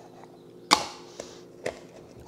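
A white plastic jar lid and a glass mason jar being handled on a stone countertop: one sharp knock, then two lighter clicks.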